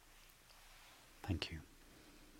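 Quiet room tone, then a man says "thank you" once, briefly, a little past the middle.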